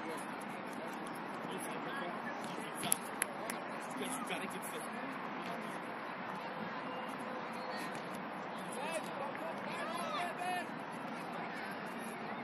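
Distant, indistinct voices of players and spectators at a soccer field over steady outdoor background noise, with a couple of sharp knocks about three seconds in.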